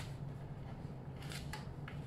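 A few light clicks and taps from metal rack parts being handled and fitted during assembly, over a steady low hum.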